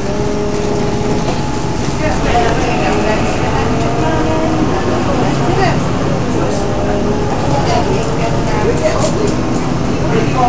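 Moving bus heard from inside the cabin: steady engine and road rumble, with indistinct passenger chatter over it.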